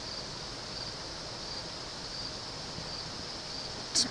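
Steady rushing noise of a waterfall, even and unbroken, with a short click near the end.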